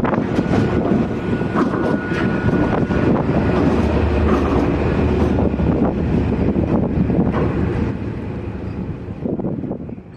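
Railhead treatment train going past, its trailing Class 68 diesel-electric locomotive rumbling by on the rails, with a brief high whine in the first few seconds. The sound dies away near the end as the train moves off.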